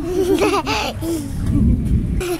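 A young child laughing in a quick run of short, high-pitched bursts during the first second.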